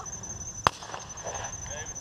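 A single shotgun shot about two-thirds of a second in: one sharp report over a field.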